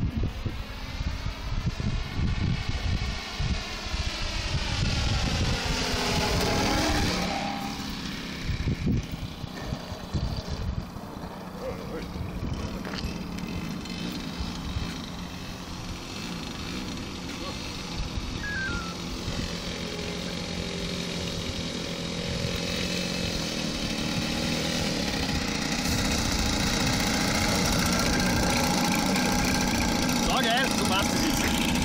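Single-cylinder DLE 55 two-stroke petrol engine of a large RC model airplane running in flight. Its pitch falls as the plane passes by in the first several seconds, with wind buffeting the microphone. Later the engine tone holds steady and grows louder toward the end.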